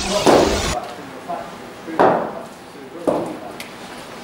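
A loud intro sound effect cuts off under a second in; then sharp knocks, two of them loud about a second apart, echo in a large indoor cricket net hall over faint background voices.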